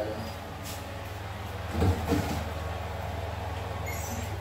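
Steady low hum of a running oven, with a couple of knocks about two seconds in as a baking tray is handled in the open oven.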